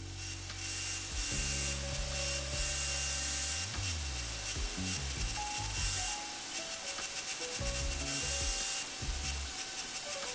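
Steel hex bolt pressed against a spinning abrasive disc on a bench-mounted grinder, a steady, gritty, high-pitched grinding hiss with short breaks between passes. Background music plays underneath.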